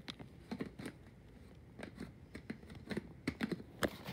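Plastic detergent bottles being handled and shifted by hand: scattered light clicks, taps and knocks of plastic. The sounds are sparse for about the first second and come more often in the second half.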